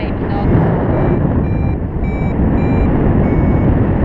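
Steady wind rushing over the microphone, with a paraglider's variometer beeping five times, a little under two beeps a second, starting about a second in. Intermittent beeping like this is the variometer signalling that the glider is climbing.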